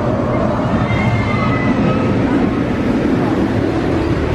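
Incredible Hulk Coaster's steel roller coaster train running along its track, a loud, steady rumble.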